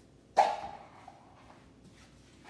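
A dog barks once, about a third of a second in, a single sudden bark that fades within half a second.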